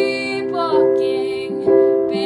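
Piano accompaniment of a slow ballad, holding sustained chords, with a new chord struck about three-quarters of a second in and again near the end. A woman's held sung note carries over the first half.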